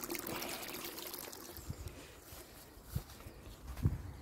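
Water from a pool's solar-heating return pipe trickling and pouring into the pool surface, fading after the first second or so. Two brief low thumps near the end.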